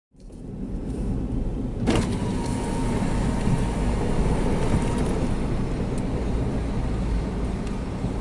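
Car running and rolling slowly, heard from inside the cabin as a steady low rumble. A sharp click comes about two seconds in, followed by a faint steady whine that stops about three seconds later.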